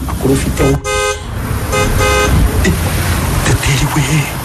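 A vehicle horn sounding two short honks about a second apart, over a low, steady rumble.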